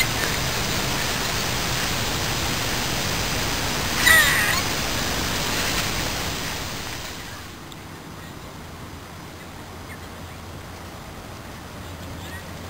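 Steady outdoor background hiss with a single short, harsh animal call about four seconds in; the hiss drops to a lower level about seven seconds in.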